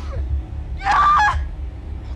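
A woman's strained, sobbing cry in one short, harsh burst about a second in, over a steady low rumble.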